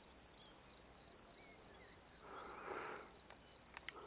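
Insects chirping in a steady, high, evenly pulsing trill. A brief soft rush of noise comes about halfway through, and a few faint clicks near the end.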